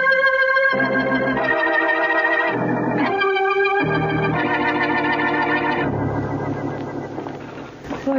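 Organ music bridge between scenes of a radio drama: a short run of held chords, changing every second or so, fading out near the end.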